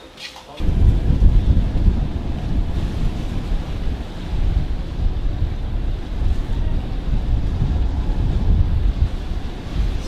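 Wind buffeting the microphone on the open deck of a ferry at sea: a loud, uneven low rumble that starts suddenly about half a second in.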